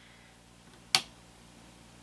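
A single sharp click about a second in as a bar of soap is handled in a wooden wire soap cutter, with quiet room tone around it.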